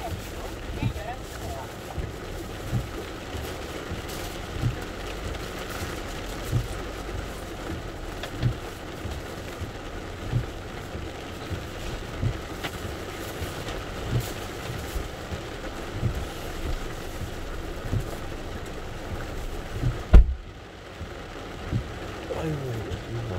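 Heavy rain on a car's windshield and body, heard from inside the car, with the windshield wipers sweeping and a low thump about every two seconds. One louder thump comes near the end.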